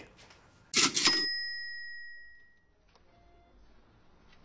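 Cash register "cha-ching" sound effect: a short clatter about a second in, then a bell ring that fades away over about a second and a half.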